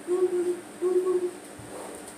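A woman's voice singing or humming two held notes on the same steady pitch, each about half a second long, with a short gap between them.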